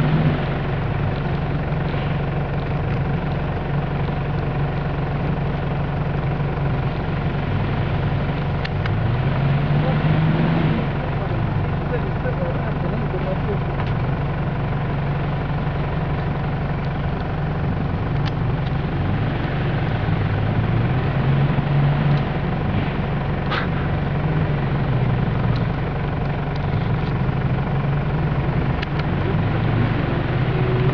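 4x4 SUV engine working along a muddy off-road track, its revs rising and falling again and again. A single sharp click comes a little past two-thirds through.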